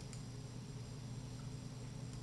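Faint steady electrical hum with a low hiss: the recording's background noise between words.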